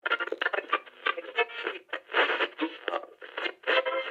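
A thin, lo-fi sample filtered like audio through a radio or old phone speaker, with no deep bass or high treble, starting suddenly at the top of the track; it holds pitched, voice-like sounds with crackly clicks.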